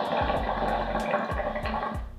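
Water bubbling in a hookah's glass base as a strong, steady draw is pulled through the hose, stopping near the end.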